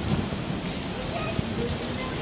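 Heavy rain falling on city pavement and road, a steady hiss.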